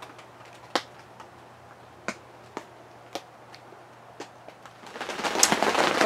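Scattered single raindrops ticking sharply on greenhouse plastic sheeting, about one every second or less. Near the end a steady patter of rain on the sheeting rises in.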